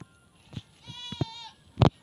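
A single wavering bleat from livestock, about half a second long, in the middle. A few sharp knocks fall around it, and the loudest comes near the end.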